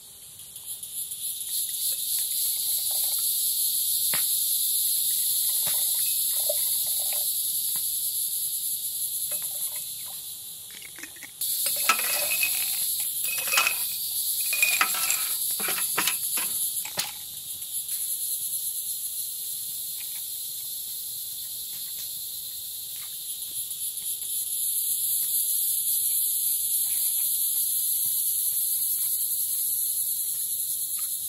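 A steady high-pitched chorus of crickets that swells and fades. A little under halfway through, a few seconds of sharp clinks as ice cubes are dropped into glass mason jars.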